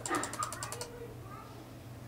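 Rapid, even clicking of a computer mouse on the frame-rate arrows, about ten clicks a second, stopping a little under a second in.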